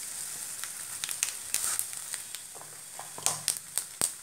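Mustard seeds and garlic sizzling in hot oil, a steady hiss with sharp pops starting about a second in and coming more often near the end as the seeds begin to splutter: the tempering stage of the curry.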